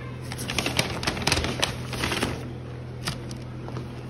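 Cardboard takeout burger boxes and a paper receipt being handled and shuffled: a quick run of crinkles, taps and rustles over the first two and a half seconds, then one more tap near the end.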